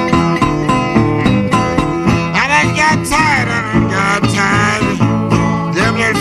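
Delta blues slide guitar on a metal-bodied resonator guitar, played as an instrumental break: a quick, even picked rhythm, with notes sliding up and down about halfway through.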